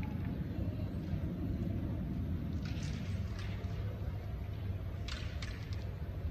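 Steady low rumble of a large hall's background noise with faint murmuring, and a few light clicks of carrom pieces from other boards: a faint cluster midway and two clearer clicks about a second before the end.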